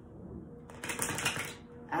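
A deck of oracle cards being riffle-shuffled: a quick rapid flutter of flicking cards lasting under a second, about halfway through.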